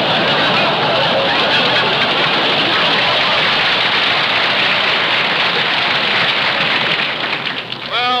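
A studio audience laughing and applauding, heard on an old, narrow-band radio recording. The noise dies down near the end.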